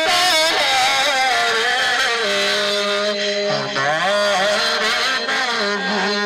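Male voice singing a naat into a microphone over a loud PA, drawing out long wavering notes, with a steady lower held note sounding beneath.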